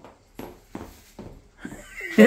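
A child running in new hard-soled shoes on a concrete floor: about four quick footfalls, a little under half a second apart.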